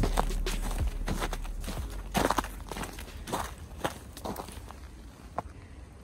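Footsteps crunching through packed snow, about two steps a second, fading away toward the end.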